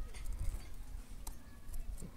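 A few faint clicks of a thin steel rebar knocking against the concrete as it is fitted loosely into holes drilled in a concrete column, one clearer click about halfway through, over a low steady rumble.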